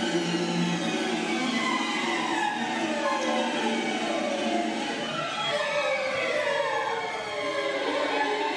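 Eerie horror-themed background soundtrack: several layered tones glide slowly downward in pitch, one after another, over a low steady drone, with a choir-like or siren-like wail.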